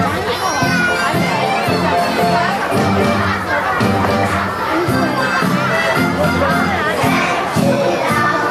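A crowd of young children shouting and cheering over music that plays for the dance.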